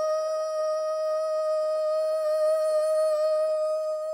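A woman's singing voice holding one long, steady high note, with no other instruments standing out.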